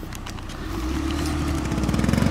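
Small gasoline lawn mower engine running at a steady pitch, getting steadily louder from under a second in.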